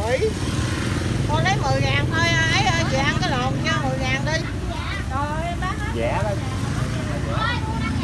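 A woman talking in Vietnamese, over a steady low motor rumble.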